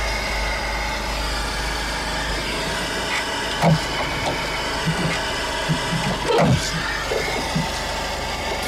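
Small Honda hatchback's engine idling steadily, with a couple of brief sharper sounds over it about four and six and a half seconds in.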